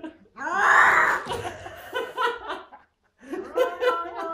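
A person bursts into loud laughter that breaks into short choppy pulses, then stops. Near the end the cat's long, wavering yowl starts again: the defensive cry of a frightened cat with its back arched.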